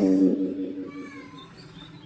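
A woman singing a held note into a microphone; the note is loudest at the start and fades out within about a second. Small birds chirp in the background.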